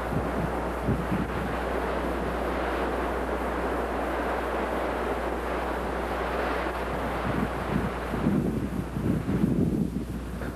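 Wind buffeting the microphone on an open beach over the rush of surf, a steady noisy rush that turns gustier in the last couple of seconds.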